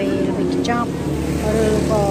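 Short bits of speech over a steady low motor hum.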